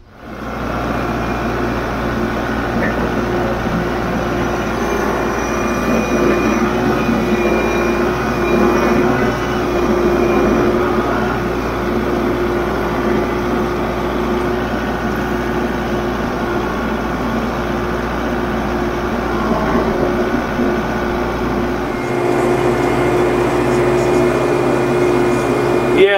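Compact Kubota tractor's diesel engine running steadily, heard from the operator's seat while hauling a loader bucket of gravel. The sound shifts a few seconds before the end.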